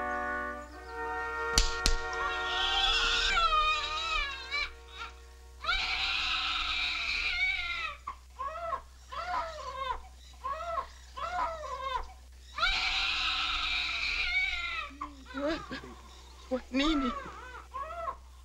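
Newborn baby crying in repeated wails that rise and fall in pitch. Before the crying, a held orchestral chord ends less than a second in, followed by a couple of sharp clicks.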